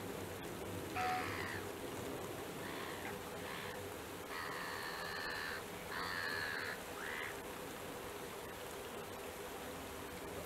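A crow cawing about six times, harsh calls with two long drawn-out ones in the middle, over a steady hiss of rain.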